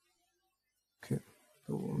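Silence for about a second, then a brief faint noise and a man's voice starting to speak near the end.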